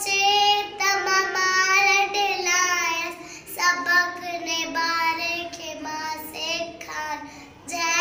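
A young girl singing a Sindhi nursery rhyme, in phrases of held notes with short breaks between them.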